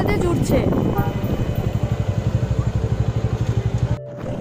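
Motorcycle engine running at low speed in slow traffic, a steady low pulse of about ten beats a second.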